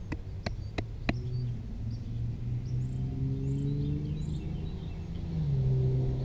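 Four sharp clicks of a knife blade biting into a wooden stake in the first second, over a motor's low hum that grows louder and rises in pitch near the end, with small birds chirping.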